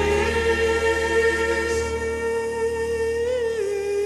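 Slowed-down, reverb-heavy pop song outro: a single long held sung note without words, wobbling and dropping slightly in pitch near the end, while the low bass fades out about halfway through.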